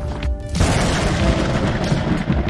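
Intro music for a logo reveal, with a deep boom and a rush of noise hitting about half a second in, then fading.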